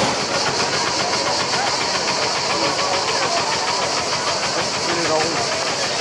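A steady, high-pitched, rapidly pulsing buzz of cicadas in the trees, under the murmur of a chattering outdoor crowd.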